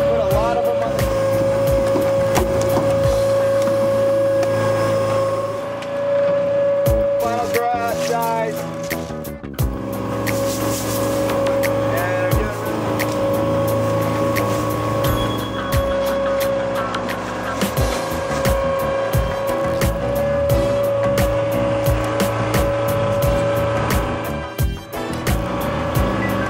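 Boat's machinery running steadily, a low drone under a constant high whine, while oyster cages are hauled out of the water; it dips briefly about nine seconds in.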